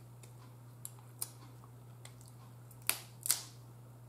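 A few short clicks and cracks of crab shell and a metal fork as crab meat is picked out by hand: two faint ones about a second in and two louder ones near the end, over a steady low electrical hum.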